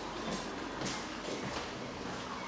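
Footsteps of several people walking on a hard floor, a few steps about half a second apart.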